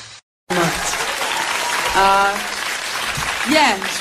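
Recorded music cuts off into a brief silence, then a live recording starts with an audience applauding and cheering. A voice briefly sounds out from the crowd about halfway through, and rising and falling calls come near the end.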